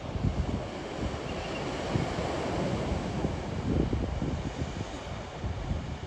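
Sea surf breaking and washing on a rocky shore, a steady rushing noise that swells a couple of seconds in. Wind gusts buffet the microphone throughout.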